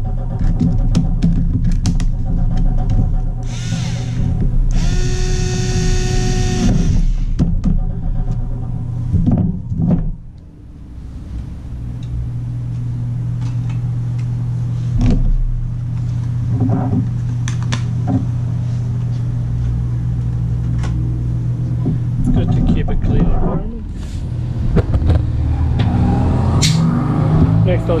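Cordless electric screwdriver whirring for about two seconds, about five seconds in, as it drives a screw into the laptop's base panel. Clicks and knocks of handling come and go over a steady low drone.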